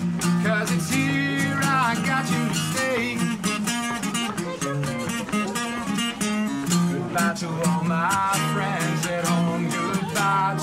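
Live acoustic guitar strumming in a steady rhythm, with a higher melodic line above it that bends up and down in pitch.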